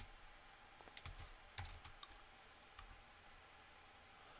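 Faint computer keyboard keystrokes: a few scattered key clicks, with long gaps between them, over near-silent room tone.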